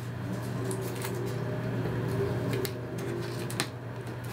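Hands handling a filter adapter and masking tape on a light table: soft rustling and a few light clicks over a steady low hum.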